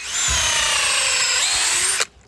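Cordless DeWalt drill boring a tap hole into a maple trunk for sap collection: a steady high motor whine whose pitch sinks slightly as it runs.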